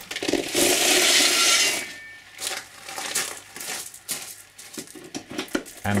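Gravel poured in a loud rattling rush onto a plastic-covered seat as a weight for about a second and a half, followed by scattered clicks and knocks of stones settling and dropping onto the concrete floor.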